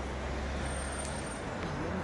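Steady low rumble under an even outdoor background hiss, with no distinct event; it eases a little near the end.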